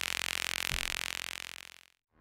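Synthesizer tone with a buzzy stack of harmonics and a broad band of hiss in the upper mids, coming out of the Jadwiga single-pole filter module in Voltage Modular; it holds steady, then fades out to silence near the end.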